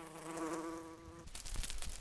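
A flying insect's wings buzzing, a steady hum that swells and then fades out a little past the middle. A few faint clicks follow.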